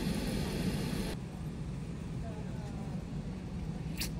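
Shop room tone: a steady low rumble, with faint voices in the background. A high hiss cuts off suddenly about a second in.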